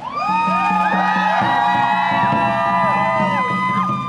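Many voices of a crowd singing out together. Long held notes overlap, each sliding up at the start and falling away at the end, and most stop together just before the end.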